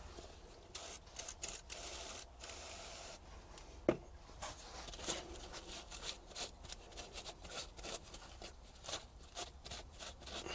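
Quiet handling sounds of gloved hands working at a car's brake caliper bleed nipple: short rubbing and scraping noises with small clicks, and one sharper click about four seconds in.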